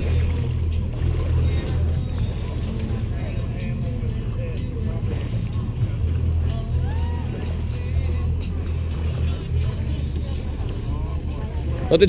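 A steady low rumble, with faint voices in the distance and background music.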